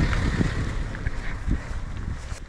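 Wind buffeting the microphone outdoors, a steady low rumble, with a couple of dull thumps from walking footsteps or the camera being handled.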